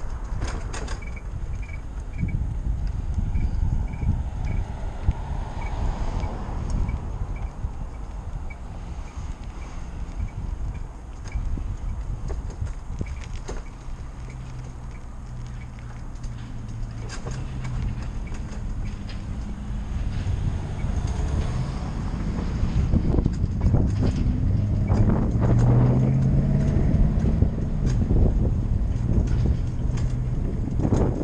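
Wind rushing over the microphone and road rumble from a moving electric bike. A low steady hum comes in about halfway, and the noise grows louder in the last third.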